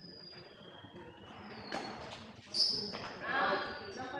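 Badminton play: court shoes squeaking on the floor in short high chirps, with two sharp hits a little under a second apart near the middle, the second one the loudest.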